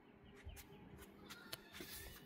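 Near silence: faint outdoor ambience with a few faint, short high sounds.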